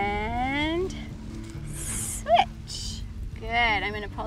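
A voice calling out in drawn-out, rising tones, with a hissy sound just past halfway and another wavering call near the end, over steady background music.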